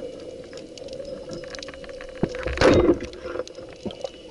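Underwater, a band-powered roller-head speargun is fired about two seconds in: a sharp crack followed by a short, louder rush of noise. Behind it runs a steady crackle of fine clicks.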